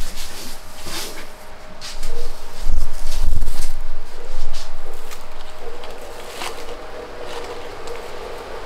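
Rustling and crinkling of shredded paper filler being stuffed into a gift basket under a plush teddy bear, with a few low handling thumps about three seconds in.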